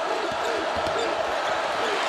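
Basketball being dribbled on a hardwood court, a run of quick bounces, over the steady noise of an arena crowd.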